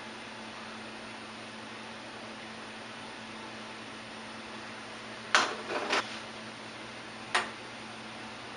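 Steady low kitchen hiss with a faint hum, broken by three short knocks on a stainless steel pot a little past halfway and near the end, as dry malt and sugar are tipped from a bowl and stirring begins.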